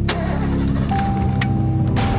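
A few sharp clicks in a car, then a steady single-pitch warning tone starts about a second in: the car's door-open alert. Music plays underneath.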